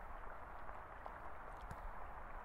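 Faint, steady background hiss with a few faint, small ticks.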